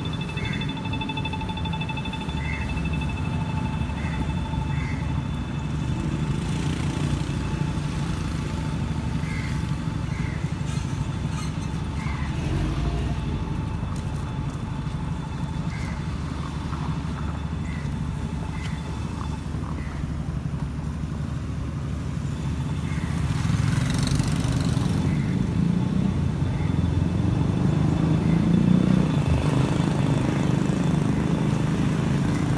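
Street traffic: a steady low rumble of cars and motorcycles, growing louder near the end as traffic passes close. Short high chirps recur every second or two, and a steady high whine stops about two-thirds of the way through.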